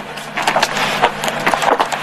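Laptop keyboard keys being typed, a quick, irregular run of light clicks.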